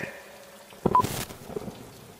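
Faint background with a short click a little under a second in, followed at once by a brief beep and a short hiss.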